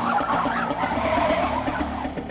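Car tyres screeching in a skid under hard braking, a wavering noisy squeal.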